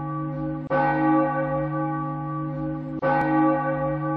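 A bell tolling: still ringing from a stroke just before, it is struck again just under a second in and once more about three seconds in, each stroke ringing on and slowly fading.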